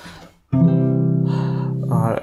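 A chord struck on an acoustic guitar about half a second in, ringing steadily.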